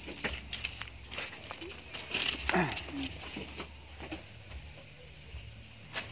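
Dry leaf litter crackling and rustling in irregular sharp snaps, thickest in the first half, as goats move over it. About two and a half seconds in there is one short call that falls steeply in pitch.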